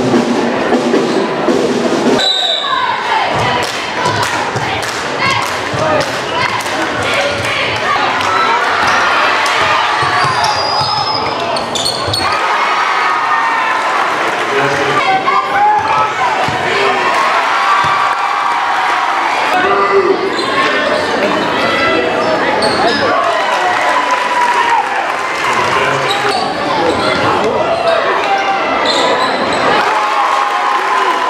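Basketball game sound in a gym hall: a ball bouncing on the hardwood over steady crowd voices, after a brief stretch of music that stops about two seconds in.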